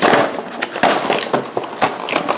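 Clear plastic blister packaging on a carded action figure crackling and crinkling as it is handled, a dense run of sharp, irregular crackles that starts suddenly.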